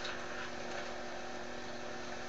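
Room tone in a small room between spoken lines: a steady low hum with faint hiss.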